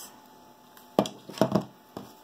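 Handling noise of a hot glue gun being put down on a work table: a sharp knock about a second in, a short clatter just after, and a small click near the end.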